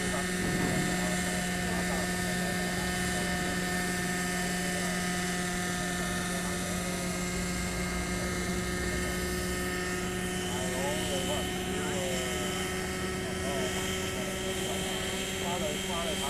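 Radio-controlled model helicopter's glow-fuel engine running at a steady, unchanging pitch while the helicopter hovers and moves slowly just above the ground.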